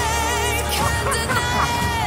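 Song music with a singer holding one long note with vibrato over a full band accompaniment and a steady low pulse.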